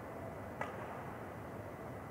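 Steady background hum of an indoor badminton hall during a break in play, with one sharp click about half a second in.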